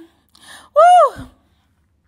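A woman's short breath, then a single loud 'woo!' exclamation about a second in, rising and then falling in pitch.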